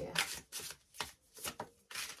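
A deck of tarot cards being shuffled by hand: about four short rustles of cards sliding against each other, with brief pauses between.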